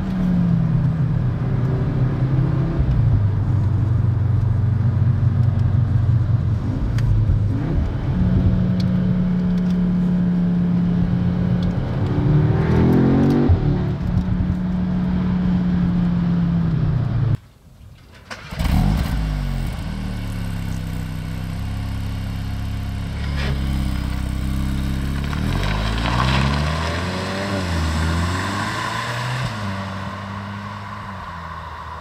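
Audi S3's 2.0-litre turbocharged four-cylinder engine running under way, heard from inside the cabin: a steady note that steps up in pitch about eight seconds in and rises sharply a few seconds later. The sound cuts out for about a second a little past halfway, then the engine note returns, rising and falling repeatedly.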